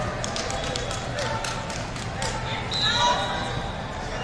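Wrestling hall ambience: scattered voices from around the room and a run of sharp knocks and slaps over the first couple of seconds. A brief high-pitched call comes about three seconds in.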